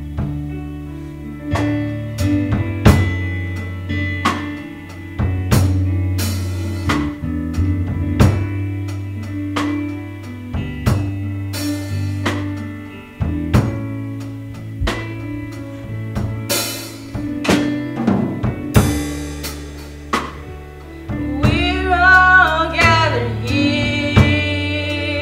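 A live church band playing: Tama drum kit hits and cymbal crashes over held low chords, with singing coming in near the end.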